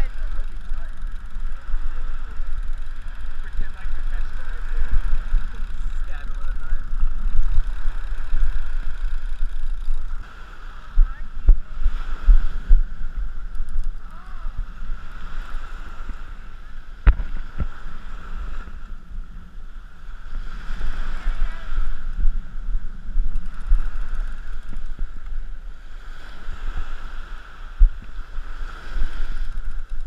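Gusty wind buffeting the action camera's microphone, with small waves washing up on the sand. The wind is heavier in the first third, then eases.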